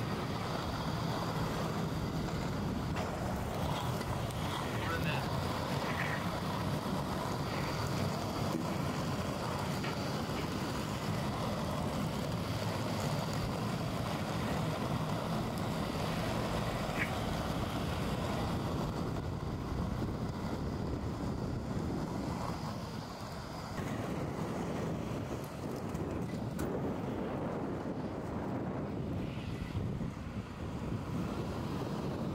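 Inline skate wheels rolling over asphalt, a steady rumble, with wind buffeting the microphone.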